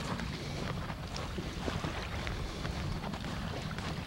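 Wind buffeting the camcorder microphone: a steady low rumble, with scattered faint ticks from handling of the camera.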